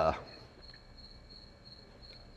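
A high-pitched insect chirp, pulsing steadily about three times a second under a quiet background hum.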